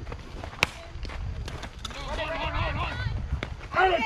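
Softball bat striking the pitched ball once, a sharp crack about half a second in. Players and spectators then shout and cheer as the play develops, getting louder near the end.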